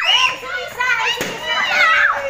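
Children shouting and squealing excitedly, several high voices overlapping.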